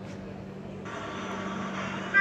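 Steady outdoor background noise, like distant street traffic, coming in about a second in over a low steady hum.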